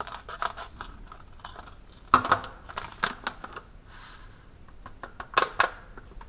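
Scissors cutting open a paper seed packet, with the packet crinkling and a run of irregular sharp clicks and snips; the loudest clicks come about two seconds in and again near the end, with a brief rustle in between.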